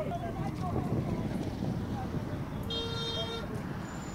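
Men's voices calling out over steady outdoor background noise, with a short horn-like toot about three seconds in.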